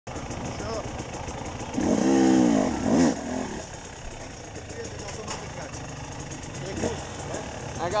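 Enduro motorcycle engine running at the start line amid crowd chatter. About two seconds in there is a loud rise and fall in pitch lasting about a second, and a shorter one just after three seconds.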